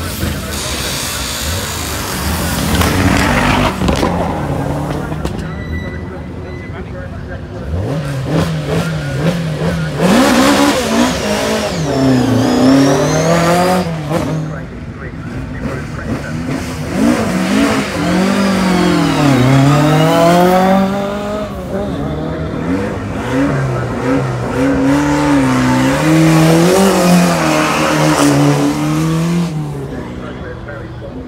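A rally car's engine revving hard on the start line, its pitch climbing and dropping in long sweeps again and again from about eight seconds in.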